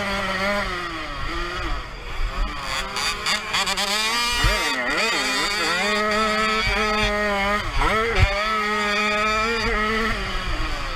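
Jawa 50 Pionýr 49 cc two-stroke single on a racing motocross bike, heard onboard, running at high revs. The pitch drops sharply and climbs back three times as the throttle is closed and opened again. A few knocks break in, mostly in the middle and near the end.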